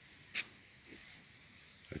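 Faint forest ambience: a steady, high insect hiss, with one short sharp click about half a second in.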